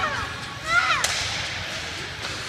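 A single sharp crack of a hockey puck being struck, about a second in, right after a short shout, over the ambient noise of an ice rink.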